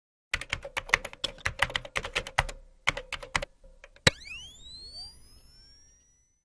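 Logo-intro sound effect: rapid keyboard-typing clicks for about three seconds, then a single sharp hit about four seconds in, followed by rising glide tones that fade away.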